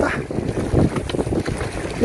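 Wind buffeting the microphone in uneven low gusts, with faint voices underneath.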